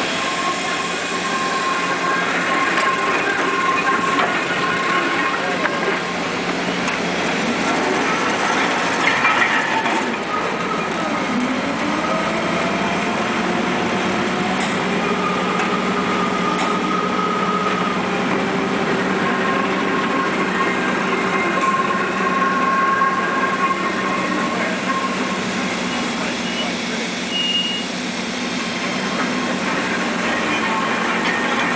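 Marion Model 21 electric shovel working the bank: a steady hum under the whine of its electric motors and the grinding of its gears and drums, with the whine gliding down and up several times near the middle as the motors change speed.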